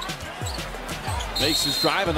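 Basketball dribbled on a hardwood court, a steady run of bounces about two or three a second, heard through broadcast game audio.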